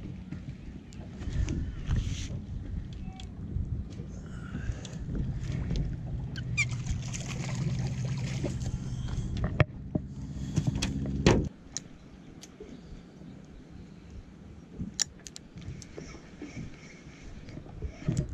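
Boat engine idling with a low, steady hum that cuts off suddenly about eleven seconds in. A couple of sharp knocks come just before, as a bluefish is brought aboard over the rail, and a few faint clicks follow.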